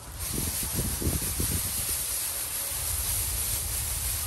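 Small dry seeds swirling and sliding across a woven bamboo winnowing tray as it is shaken, a steady rustling hiss.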